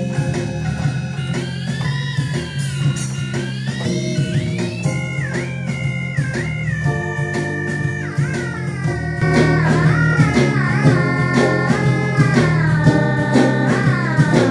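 Live keyboard playing on a multi-manual rig: a guitar-like lead voice with pitch bends sliding between notes, over a steady bass and drum-machine backing. The music gets louder about nine seconds in.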